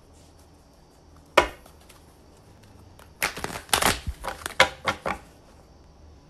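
A deck of tarot cards being handled: one sharp tap about a second and a half in, then a run of quick slaps and rustles of the cards being shuffled for about two seconds.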